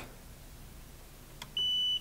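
A faint click of the power button on the Eachine Novice radio transmitter, then one steady high beep of about half a second near the end from the transmitter, as the switch is held to turn the radio off.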